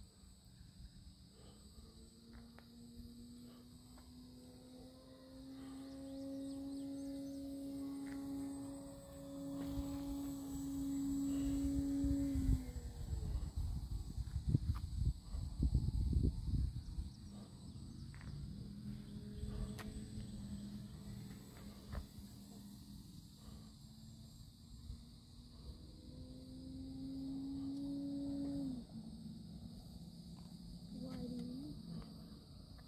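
Electric motor and propeller of an E-flite Night Radian RC glider running under throttle: a steady hum that drops in pitch and cuts off about twelve seconds in, then comes back and cuts off again near the end. Crickets chirp steadily throughout, and wind rumbles on the microphone from about ten to seventeen seconds in.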